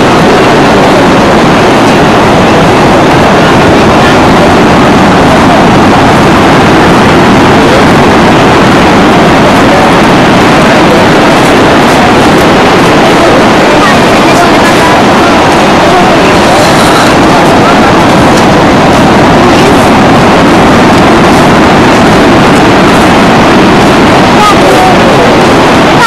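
Breaking sea surf, a steady loud roar that overloads the microphone, with indistinct voices mixed in.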